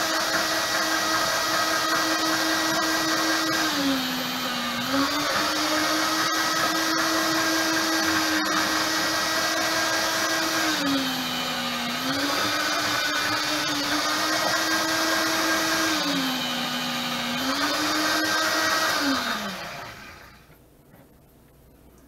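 Electric meat slicer running with a steady motor hum. Its pitch sags three times as the spinning blade cuts through a smoked pork loin. Near the end it is switched off and the hum falls in pitch as the blade spins down.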